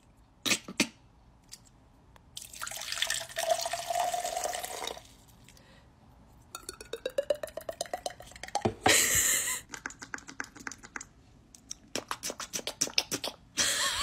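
A person's mouth-made imitation of a lotion bottle being squeezed. First a few clicks and a long hissing squirt. Then rapid wet sputtering clicks that rise in pitch, a loud spurt, and more quick sputters.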